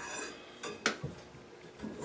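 Hi-hat cymbal being set down onto its stand: one sharp metallic clink a little under a second in, followed by a couple of lighter taps, over a faint cymbal ring.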